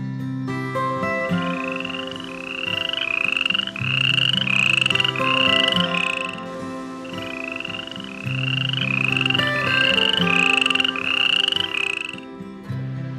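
A series of short rising calls, about two a second, in two bouts of several seconds each, over soft background music.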